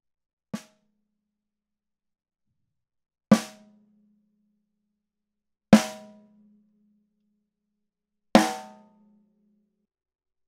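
A tom-tom fitted with a gaff-tape strip carrying a cymbal felt on its head, tapped lightly once and then struck three times, a couple of seconds apart. Each stroke rings with a steady low tone for about a second before it dies away.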